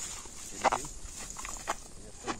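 A short, loud animal call about two-thirds of a second in, followed by a few faint clicks.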